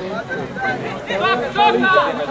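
Voices at an amateur football match shouting and talking over one another, with louder calls in the second half.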